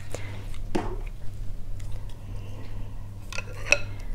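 A few light clicks and clinks of chopsticks and a spoon being picked up and knocking against a glass bowl of noodle soup, the two sharpest near the end, over a low steady hum.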